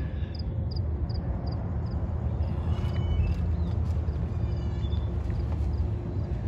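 Outdoor background: a steady low rumble, with a cricket chirping about two or three times a second that fades out after the first second.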